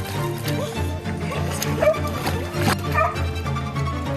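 Background music, with a dog barking and whining a few times over it around the middle.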